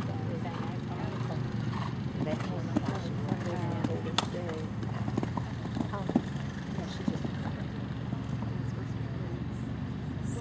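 Horse cantering a show-jumping course, its hoofbeats and a few sharp knocks coming around three to four seconds in and again near six seconds. Indistinct background talk and a steady low hum run underneath.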